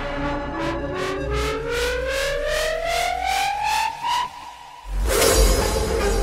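Hardstyle track build-up: a synth line rising steadily in pitch over evenly repeated hits, a short drop-out about four seconds in, then the drop lands suddenly with a crash and heavy bass kicks about five seconds in.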